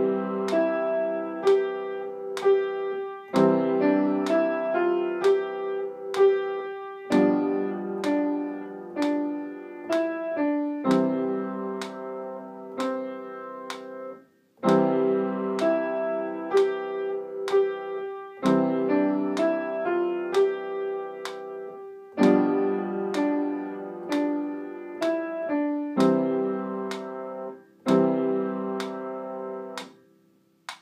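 Piano playing a beginner technique exercise built on C major broken chords (C–E–G–C, C–E–G–E). It runs in even phrases of about four seconds, each followed by a brief break, and stops at the end.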